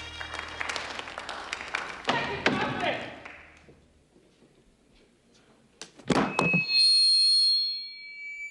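A live soul ballad with its band fades out on its last held note, followed by a couple of seconds of near silence. About six seconds in there is a loud thunk, then a high, steady squeal like PA microphone feedback.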